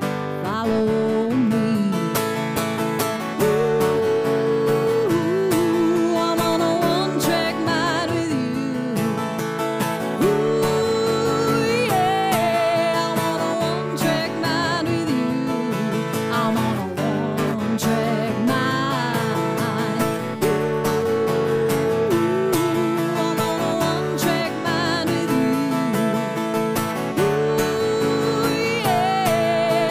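A woman singing a country-rock song while strumming an acoustic guitar, her held notes wavering with vibrato over a steady strum.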